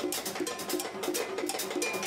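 Live percussion: a cowbell struck in a steady rhythm of about four to five hits a second, with crisp high percussion strokes layered over it.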